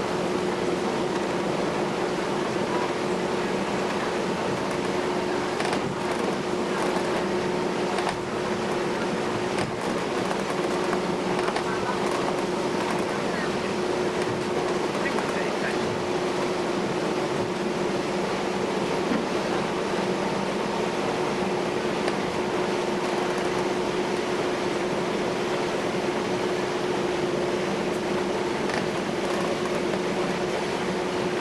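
Steady drone of a passenger ferry's engines under way, heard inside the passenger cabin, with a constant hum holding one note and no change in level.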